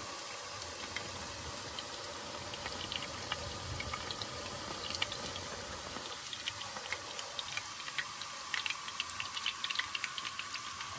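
Breaded chicken pieces shallow-frying in hot oil in a cast iron skillet: a steady sizzle with many small crackling pops, which come thicker in the last few seconds.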